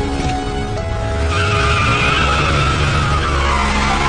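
A car pulling away hard with its tyres squealing, starting about a second in, the squeal slowly falling in pitch over a low engine rumble, with background music.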